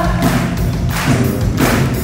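Live band music played loud through the hall's PA, with a steady thumping beat a little under two per second under a sustained bass line.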